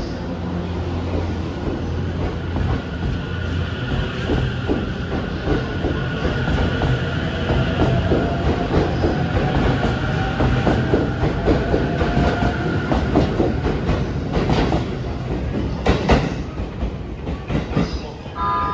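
JR East E257 series electric multiple unit pulling out and passing close by. Its wheels clack over the rail joints as it gathers speed, under a faint traction-motor whine that rises in pitch. The clacking ends as the last car clears near the end.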